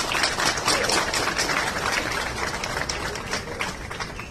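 A crowd applauding, loudest in the first second or two and thinning out toward the end.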